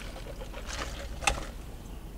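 Soft sipping of a drink through a straw inside a vehicle cab, over a low steady hum, with a short click about a second and a quarter in.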